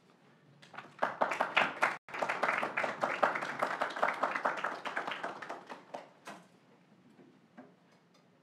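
A small audience applauding. The clapping starts about a second in and dies away after about six seconds.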